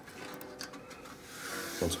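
Light handling of a stack of paper postcards in an electric stack cutter's bed: a few small taps as the stack is settled, then a rising rubbing hiss near the end.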